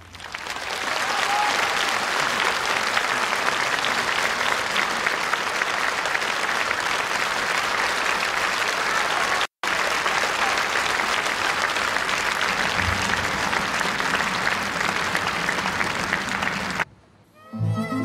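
Large concert-hall audience applauding at the end of a song: steady, dense clapping that drops out for an instant about halfway and cuts off suddenly near the end. Just before the end, bowed strings begin the next piece.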